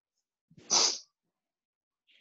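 One short, sharp burst of a person's breath noise, under half a second long, a little under a second in.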